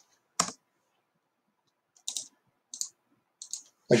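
A few isolated clicks from a computer keyboard and mouse: one sharper click about half a second in, then three fainter, short clicks spaced under a second apart in the second half.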